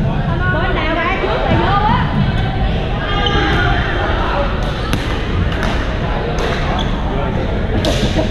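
Badminton play in a large echoing gym: sharp racket hits, several close together in the second half, squeaking shoes on the court floor, and players chattering on the surrounding courts.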